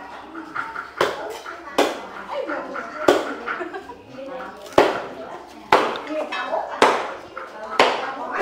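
Cleaver chopping through roast pork: about seven sharp, separate chops, spaced irregularly about a second apart.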